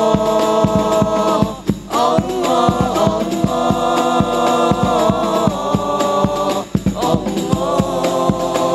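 Male voices singing a sholawat together into microphones, holding long notes in phrases that break briefly about two seconds in and again near the end, over a steady beat of hand-struck frame drums.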